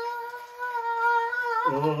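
A woman's voice holding one long, high sung note, slightly wavering in pitch. Near the end a man's voice cuts in over it.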